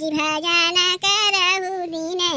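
A high-pitched voice chanting devotional verses in a sung melody, with held, wavering notes and short breaks between phrases.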